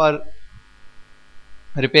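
A man speaking briefly at the start and again near the end, with a faint steady electrical hum filling the pause between.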